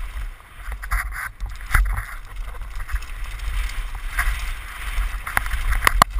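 Downhill mountain bike rolling fast over a dirt trail, heard from a helmet camera: wind buffeting the microphone, steady tyre noise on the dirt, and a few sharp rattles from the bike over bumps.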